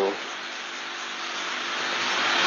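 Steady hiss of an old recording's background noise, growing slowly louder through the pause.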